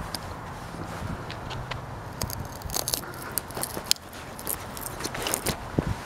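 Pliers picking and tearing at the paper and tape wrapping on a microwave oven transformer's winding to expose the wire: an irregular run of crackles, scrapes and small metal clicks.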